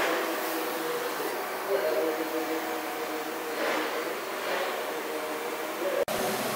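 Steady machine hum with several held tones, the background running of shop machinery.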